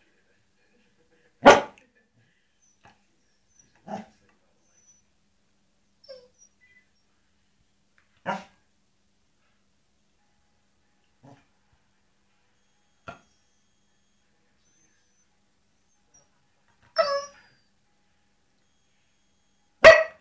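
Pembroke Welsh corgi giving short single barks every few seconds, about eight in all, some faint, the loudest about a second and a half in and in the last few seconds. This is attention-seeking barking.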